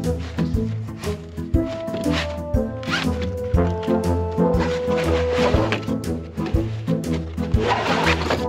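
A zipper on a padded ladder bag being pulled in several rasping strokes, over background music with a steady beat.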